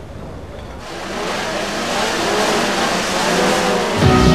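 Several small race-tuned two-stroke Trabant engines revving together on the starting grid. The noise fades in about a second in and grows louder.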